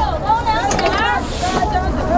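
A man laughing for about a second, over a steady low rumble of wind on the microphone.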